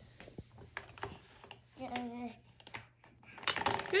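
Hard plastic shape-sorter pieces clicking and knocking against a plastic shape-sorter ball and the tabletop: scattered light clicks, thickening near the end. A short child's vocal sound comes about two seconds in.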